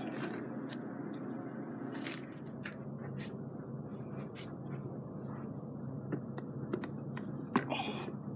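Light plastic clicks, taps and scrapes from handling an AeroGarden hydroponic unit as it is moved and set in place, over a steady low background hum; a few sharper knocks come near the end.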